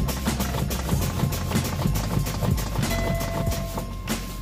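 A semi truck's air brake pedal is pumped over and over, and each application and release vents compressed air from the brake valves in short, repeated hisses. This bleeds down the system's air pressure to test that the low-air warning comes on.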